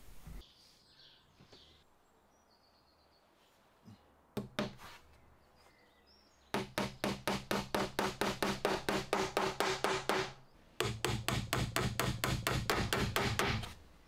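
Small cross-pein pin hammer tapping veneer pins into a thin wooden moulding on a window frame. A couple of taps come about four seconds in, then two long runs of quick, even taps, about six a second, with a short break between them.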